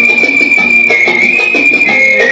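Electronic keyboard playing an instrumental tune: a high, whistle-like lead voice holds long notes, shifting pitch slightly near the middle and stepping down near the end, over a rhythmic chord accompaniment.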